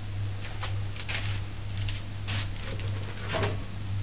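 A steady low hum with a few short light knocks and clatters of handling, the loudest a little before the end.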